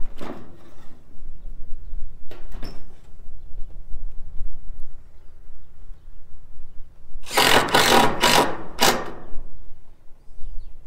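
Power drill driving screws through corrugated metal roofing sheets: a couple of short bursts near the start, then a louder run of four pulses about seven to nine seconds in as a screw is driven home.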